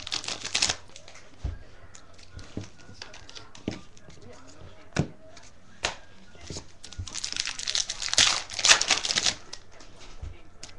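Foil card-pack wrapper crinkling as it is handled and torn open: one burst of crinkling at the start and a longer one from about eight seconds in, with a few light clicks of cards being handled on a table in between.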